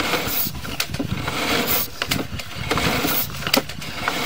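Sewer inspection camera's push cable being pulled back through the line, with irregular clicks and knocks over a steady noisy background.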